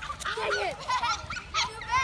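Several children shouting and squealing as they play tag, short high-pitched calls overlapping one another.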